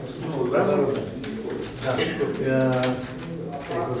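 Men's speech: short spoken replies and a drawn-out voiced sound, in a small room.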